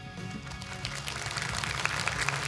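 Audience applause starting about a second in and building, over soft background music.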